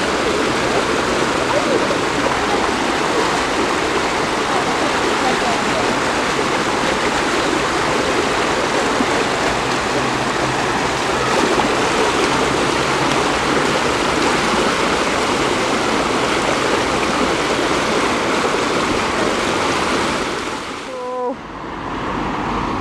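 Water of the Diana Memorial Fountain rushing steadily down its shallow granite channel, a continuous even flow. It breaks off about a second before the end.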